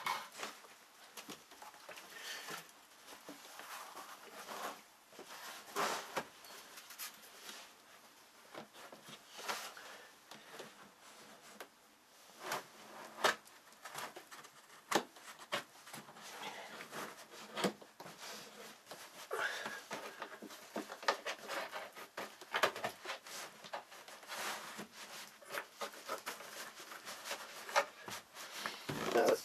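Carpet runner being laid onto glued floor and pressed down by hand: faint, irregular rustling and brushing with scattered light knocks.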